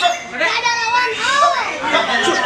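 White-rumped shama singing a fast, varied run of whistled glides and arching notes, with a rapid high trill a little into it, over a busy background of other voices and calls.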